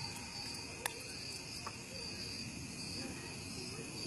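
Steady high-pitched insect chorus, like crickets trilling without a break, with one brief click a little under a second in.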